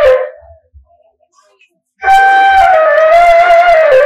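A long white pipe flute is blown close to a microphone. A held note trails off just after the start, and after a pause of about a second and a half a second long note begins about two seconds in, dropping in pitch near the end.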